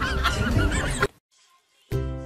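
A cat's repeated wavering calls over background music, which cut off about a second in, leaving near silence.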